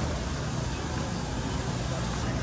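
Steady low hum and hiss of store ambience, from open refrigerated display cases and ventilation, with no distinct events.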